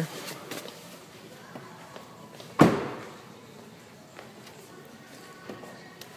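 A car door shutting with a single solid thump about two and a half seconds in, with a few light clicks around it.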